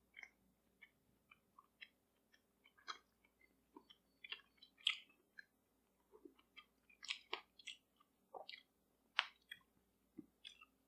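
Faint mouth sounds of a person chewing a soft pemmican bar of dried beef and tallow: irregular wet smacks and clicks, with no crunch.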